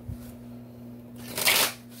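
Tarot cards being shuffled by hand: one brief swish of cards about a second and a half in, over a low steady hum.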